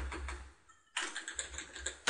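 Typing on a computer keyboard: a quick run of keystrokes that stops about half a second in, a short pause, then a second run of keystrokes.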